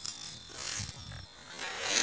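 Burning fuse of a sutli bomb (twine-wrapped firecracker) fizzing, hissing unevenly and growing louder near the end.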